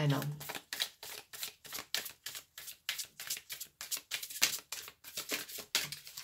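A tarot deck being shuffled by hand: a steady run of sharp card clicks, about four a second.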